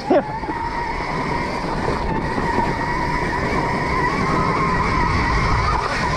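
Stark Varg electric dirt bike under way: a steady motor and drivetrain whine whose pitch wavers a little with speed, over the continuous rumble of the tyres and chassis on a rough dirt trail, growing slightly louder over the few seconds.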